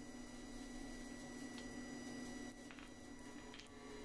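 Quiet workshop room tone: a faint steady electrical hum with a thin high whine, and a few soft light clicks as a steel bar is handled on the anvil. No hammer blows.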